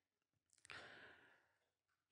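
Near silence with a faint in-breath from a man on a close microphone, about half a second in and lasting about a second, as he pauses between sentences.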